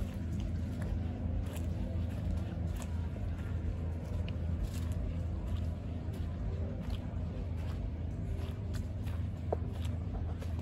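Footsteps on a dirt trail covered in dry pine needles, leaves and twigs, heard as scattered light crunches and clicks, over a steady low rumble.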